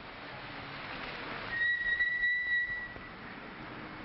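One steady high whistle lasting about a second and a half, sounding over a hiss that swells up before it and eases off after.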